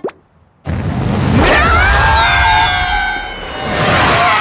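Cartoon rocket blast-off sound effect: a sudden loud start about half a second in, a rising whoosh, then a steady rush with falling whistling tones that swells again near the end.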